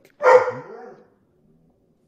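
A single dog bark about a quarter second in, loud and short, trailing off within a second.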